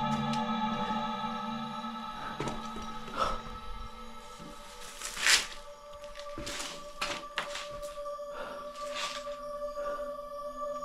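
Background music of sustained droning tones that shift in pitch partway through, with a few short scuffing or knocking noises over it, the loudest about five seconds in.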